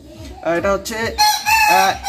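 A rooster crowing, its long held note coming in the second half.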